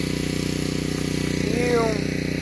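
Honda GCV160 overhead-cam engine of a gas pressure washer running steadily at constant speed, driving its Simpson pump.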